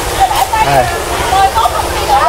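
Water running and splashing steadily, heard under laughter and chatter.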